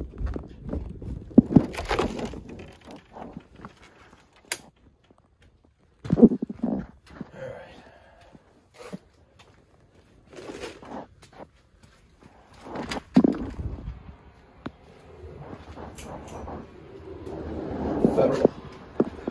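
Footsteps and scattered knocks and thuds of someone walking through a house and down to a basement, with rubbing and handling noise on a handheld camera's microphone; louder thumps come about six seconds in and again past the middle.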